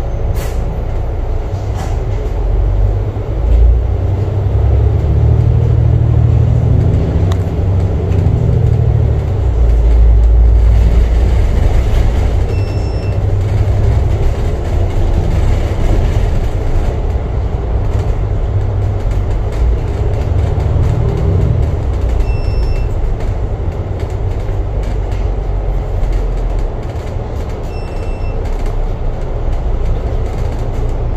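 Alexander Dennis Enviro500 double-deck bus's diesel engine and drivetrain heard from inside the cabin: a loud low rumble that rises in pitch as the bus pulls away and gathers speed over the first ten seconds, builds again around twenty seconds, and eases off near the end as the bus slows.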